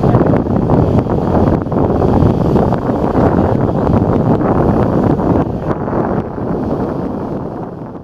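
Heavy wind rumble on the microphone over the running noise of river water and passenger launches, fading out near the end.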